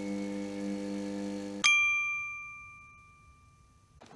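Logo sound effect: a held low drone note that cuts off about a second and a half in, where a single bright ding strikes and rings, fading away over about two seconds.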